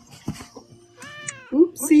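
A cat meow sound effect from a TikTok LIVE gift animation: one meow that rises and falls in pitch, about a second in.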